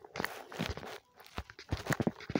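Irregular light taps and clicks, like fingertips tapping a phone's touchscreen and the phone being handled close to its microphone.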